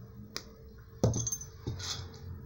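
Diagonal wire cutters snipping a wire end: a sharp snip about a second in, with a small click before it and another click and rustle near the end as the cutters are handled.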